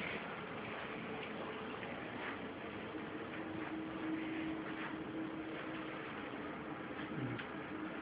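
Quiet indoor room tone: a faint steady hum with light, scattered ticks and handling noise.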